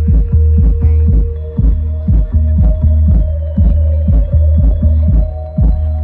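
Live electronic dance music over a festival sound system: a steady kick drum about twice a second under a heavy bass line, with a long held synth note above it.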